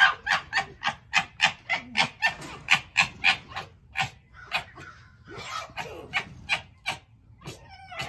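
Two pet foxes squabbling: a fast run of short, sharp chattering calls, about three or four a second, the kind of gekkering foxes make in a dispute. The calls thin out near the end.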